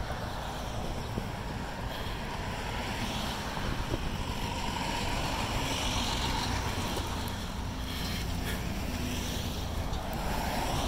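Wind rushing over the microphone of a camera riding along on a moving bicycle, a steady low rumble with the bike's rolling noise under it.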